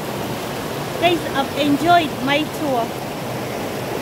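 Shallow rocky stream rushing over boulders: a steady rush of water. A person's voice comes in over it for about two seconds, starting about a second in.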